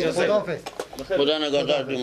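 Men's voices murmuring greetings over one another, with a few short clicks around the middle.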